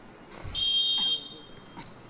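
A referee's whistle, blown once about half a second in as one steady shrill blast of under a second, signalling the restart of play.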